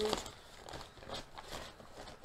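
Faint rustling and soft scattered clicks of tissue-paper packing being handled while a parcel is unwrapped.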